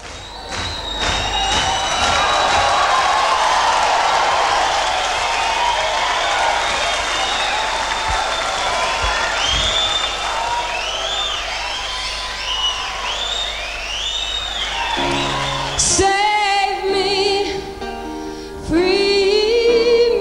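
Concert audience applauding and cheering with whistles in a large hall for about fifteen seconds. The band then comes in with keyboard chords, and near the end a woman starts singing.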